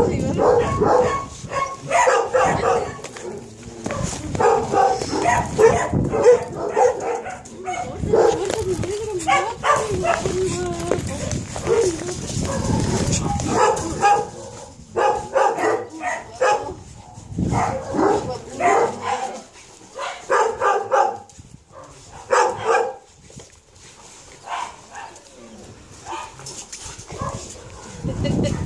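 Several lab mix puppies yipping, whining and barking in many short calls as they jump up on a person, mixed with a woman's voice.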